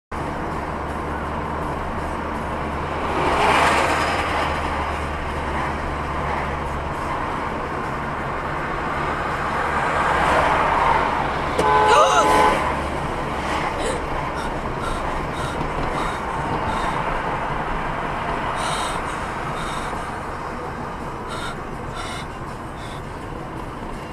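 Steady road and traffic noise with swells, broken about twelve seconds in by a short vehicle horn honk, the loudest moment.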